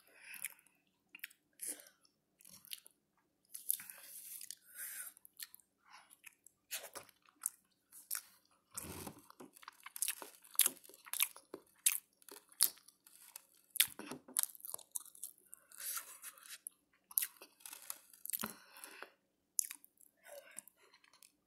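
Chewing and wet mouth sounds close to a phone microphone: an irregular run of sharp clicks and crackles with no steady rhythm.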